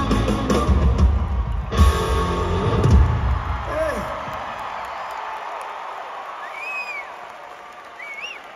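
A rock band ends a song live at full volume, with a sharp final hit just under two seconds in, and the drums and guitars dying away over the next couple of seconds. An arena crowd follows, with a shrill rising-and-falling whistle near the end.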